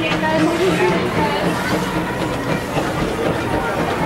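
Open passenger cars of the Disneyland Railroad park train rolling slowly past, wheels clacking on the rails, with people's voices over it.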